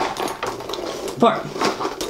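A cell phone being pushed down into a Louis Vuitton Alma BB coated-canvas handbag: irregular rustling and small knocks as it rubs against the bag.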